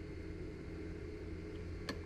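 Steady low mechanical hum with a few fixed tones, and a single sharp click just before the end.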